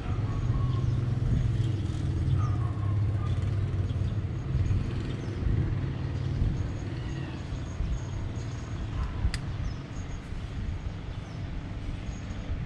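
Low, steady rumble of city street traffic, with faint bird chirps above it and a single sharp click about nine seconds in.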